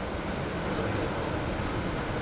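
Steady rushing background noise of a hall, picked up through the podium's public-address microphone in a pause between spoken phrases.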